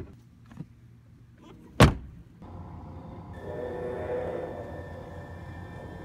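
A single loud, sharp impact a little under two seconds in, after a couple of faint clicks. A steady low hum then sets in, joined about a second later by sustained droning tones that swell and settle.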